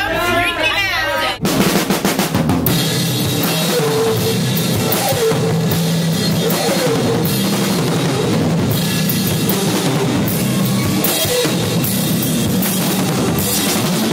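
Live band playing loudly with a full drum kit, the music starting abruptly about a second and a half in and carrying on at a steady level.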